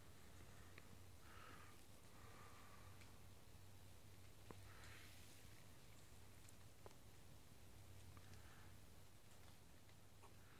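Near silence: a faint background hiss with a low steady hum, broken by two faint clicks about four and a half and seven seconds in.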